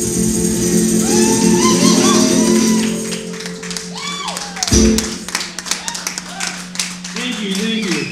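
The last chord of a song on a resonator guitar rings out while the crowd whoops and cheers. The chord is cut off about five seconds in, and the audience keeps clapping. A man's voice starts near the end.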